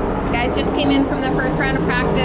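A woman talking, over a steady low mechanical drone in the background.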